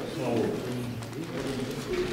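People talking in the background, their words indistinct.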